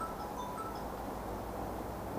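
Room tone during a pause in speech: a steady low hum, with a few faint, brief high tinkling tones.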